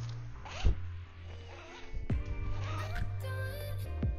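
Strap of a set of wooden gymnastic rings pulled through its buckle, with one short zipper-like rasp about half a second in, over background music with a steady bass.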